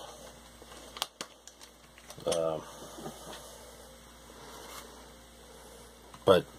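A brief murmured sound from a man's voice about two seconds in, with a sharp click about a second in and a few faint ticks, over low room hum.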